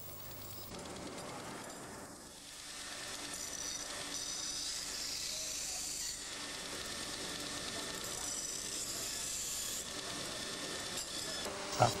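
Steel sheep-shear blade held against a rotating grinding wheel, a steady grinding hiss as the edge is set on the still-soft, unhardened steel. The grinding grows louder about two to three seconds in and then holds steady.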